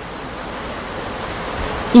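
Steady rush of running water, a little louder toward the end.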